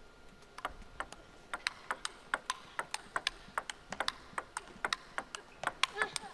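Table tennis rally: the plastic ball clicking off the rackets and the table in quick alternation, about four to five clicks a second, starting about half a second in.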